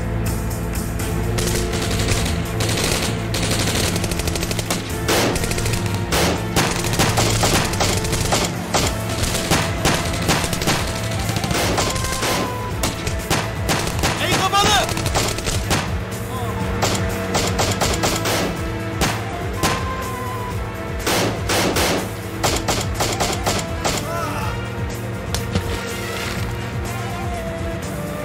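Gunfire: many handgun shots in rapid bursts, over tense background music.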